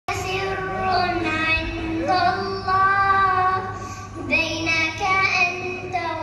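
A girl singing an Arabic nasheed solo without instruments, in long, held notes that bend and glide in pitch.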